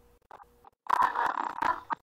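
A harsh, garbled burst of sound comes over the video call, lasting about a second and starting about a second in. It is a participant's microphone audio breaking up, bad enough that she is asked to switch to a headset.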